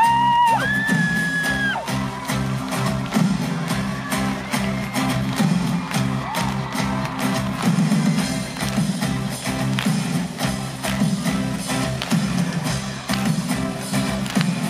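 Live pop-rock band playing an instrumental passage between sung lines: drums, electric guitar and bass guitar, recorded from among the audience. High held cries come from the crowd in the first couple of seconds.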